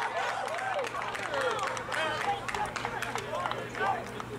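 Several men's voices shouting and calling out over one another, football players on the sideline.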